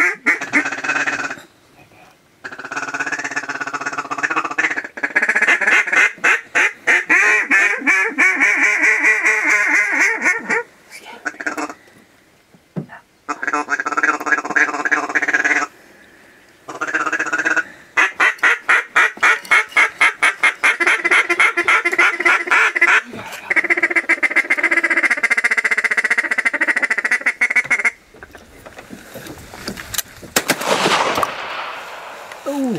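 Hand-blown duck calls sounding long runs of rapid quacks and fast chatter, broken by short pauses, as hunters call circling ducks in to the decoys.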